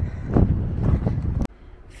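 Wind rumbling on the microphone of a camera carried by a walking hiker, with footfalls on a dirt trail about twice a second. It cuts off suddenly about one and a half seconds in, leaving a much quieter outdoor background.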